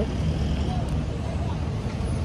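Street traffic ambience: a steady low rumble of road vehicles, with faint voices in the background.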